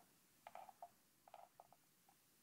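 Near silence: faint room tone, broken by two short clusters of faint, brief sounds, the first about half a second in and the second just past the middle.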